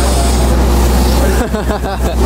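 Steady low drone of a boat's engine running, with voices briefly heard near the end.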